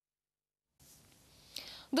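Dead silence for most of a second at an edit, then faint studio room tone and a short intake of breath, with a woman starting to speak near the end.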